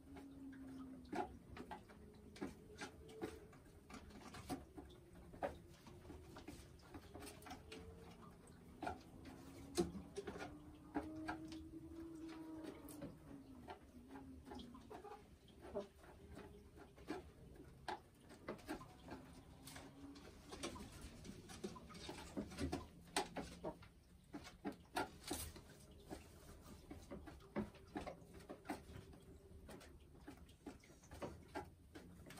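Boris Brown hen in a nest box making soft, drawn-out low crooning calls that rise and fall, with scattered faint clicks.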